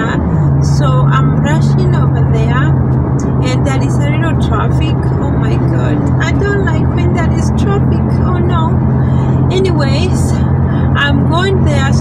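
A woman talking over the steady low drone of a car's engine and road noise, heard inside the cabin while driving.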